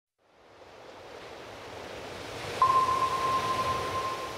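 Rushing underwater-style noise fading in from silence and growing louder. A single steady high tone enters with a jump in level about two and a half seconds in and holds.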